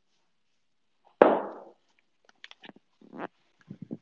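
A single loud thump on a wooden floor about a second in, then a run of short, softer knocks and bare footfalls as a person gets up from a yoga mat and steps across it.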